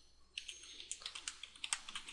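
Computer keyboard typing: a quick, uneven run of faint keystrokes starting about a third of a second in.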